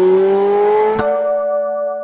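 Audio logo sting: a car engine revving, its pitch climbing slowly, cut by a click about a second in. A held chord of several steady tones then rings on.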